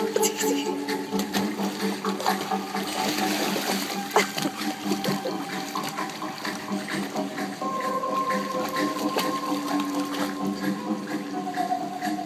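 A German Shepherd puppy wading in a shallow fountain pool: water sloshing, with many short sharp splashes from its legs. Steady held notes of background music run underneath.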